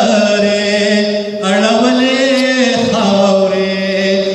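A man's voice reciting Pashto poetry in tarannum, a melodic chant, holding long drawn-out notes in two phrases with a brief break between them.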